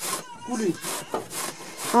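Pumpkin being grated by hand into a metal pot: a rhythmic rasping scrape, about three strokes a second. A short voice sounds briefly about half a second in.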